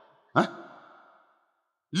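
A man's single short spoken "hyan" (yes) or sighing breath into a stage microphone, with a brief echo fading out over about a second; then a pause with nothing to hear until his speech starts again at the very end.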